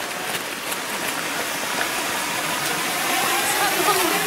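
Steady rushing of a swollen stream: an even hiss of running water.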